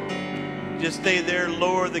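Stage keyboard playing soft held chords as a worship song winds down, with a man's voice starting to speak over it about a second in.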